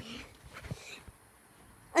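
A boy's sing-song voice trailing off at the start, then a couple of faint short sounds and near-quiet room tone until he speaks again.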